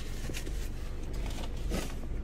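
Light rustling and handling noises of takeout food packaging, a few short faint crinkles over a steady low hum in a car cabin.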